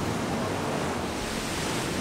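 Ocean surf breaking and washing up on a beach, a steady rush of waves.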